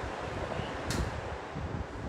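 Steady rushing noise with low rumbling, with one short sharp click a little under a second in.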